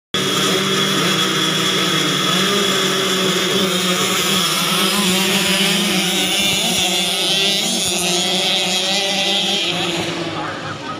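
A pack of children's mini motocross bikes revving hard together as they launch from the start line and race away, a dense, loud, continuous mix of high-revving small engines.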